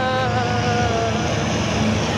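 Seawater from an aquarium's wave-crash exhibit breaking and pouring over a glass tunnel, a loud steady rush heard from inside the tunnel. A held tone slides slowly down over it and fades about a second in.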